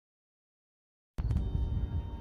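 Dead silence, then about halfway through, quiet background music starts abruptly over a low outdoor rumble.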